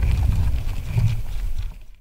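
Channel-logo outro sound effect: a low, rumbling sting with short thuds that fades out to silence near the end.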